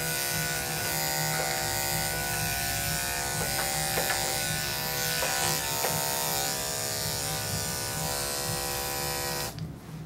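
Corded electric dog-grooming clippers running with a steady buzz as they trim a Yorkshire Terrier's head hair, with a few faint clicks, then switched off near the end.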